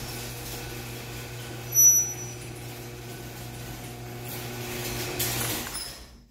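Electric overhead garage door opener running with a steady motor hum as the door rises, then stopping just before the end. A brief high-pitched squeak comes about two seconds in and is the loudest sound.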